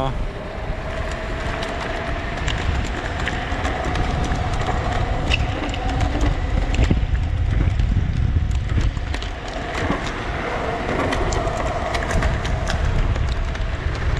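Pulse 10 Dual Pro electric scooter, both 1200 W motors driving, climbing a hill at full power. A steady motor whine sits over heavy wind rumble on the microphone and tyre noise, with scattered clicks and rattles from the deck over bumps.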